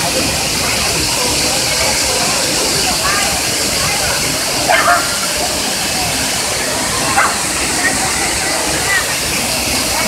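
Bushkill Falls: a waterfall plunging into its pool, a steady, loud rushing of falling water.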